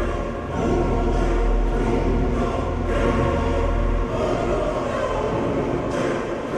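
Dark music with a choir singing sustained chords over a deep low drone; the drone drops away about four seconds in.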